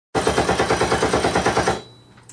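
Rapid-fire sound effect opening the radio show: a pitched sound pulsing evenly about ten times a second, cutting off suddenly just before the end.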